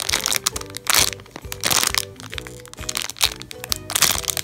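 A clear plastic bag crinkling and crackling in several short bursts as a packaged shrimp-nigiri squishy is handled, over steady background music.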